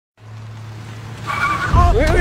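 A car's tyres squealing as it brakes hard, with a loud low rumble setting in just after the squeal starts.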